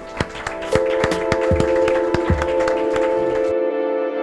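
Small audience clapping, sharp separate claps rather than a dense roar. Music with sustained tones fades in underneath about a second in and takes over when the clapping cuts off near the end.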